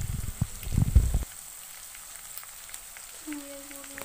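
Chicken pieces frying in oil with spices, sizzling, with a few sharp clicks in the first second. A little over a second in, the sizzle drops suddenly to a quieter steady hiss, and a short low hum of a voice comes near the end.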